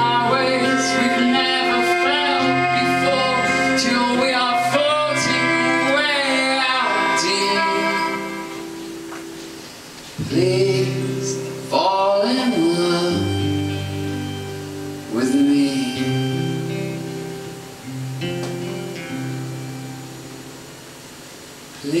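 Live rock band music: a male lead vocal sung in long, sliding phrases without clear words over guitar and bass. One drawn-out phrase fills the first eight seconds or so; after a short lull come shorter phrases.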